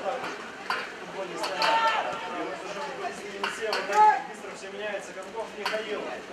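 Footballers' shouts and calls across an open pitch during live play, two louder calls among them, with a few sharp knocks of the ball being kicked.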